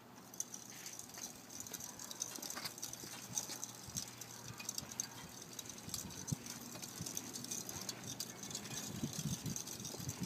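Faint rattling and scattered light clicks from a child's bicycle with training wheels rolling along a concrete sidewalk.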